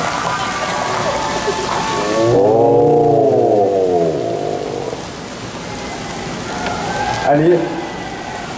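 A plastic PET water bottle being twisted and crushed close to a microphone: a dense crackling crunch for about two and a half seconds that stops abruptly. A man's drawn-out 'mmm' follows, rising and then falling in pitch.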